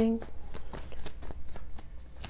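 A deck of tarot cards being shuffled by hand: a quick, close run of light card clicks and riffles.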